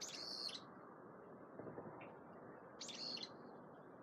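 A bird calls twice, with short high chirps right at the start and again about three seconds later, faint over a low background hiss.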